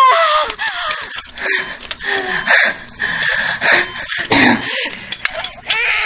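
A woman in labour crying out in pain as she pushes. A loud falling cry comes at the start, followed by gasping and strained breathing.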